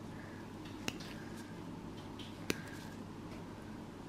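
Two sharp snips of nail nippers cutting back a toenail, about a second and a half apart, with a few fainter ticks from the blades.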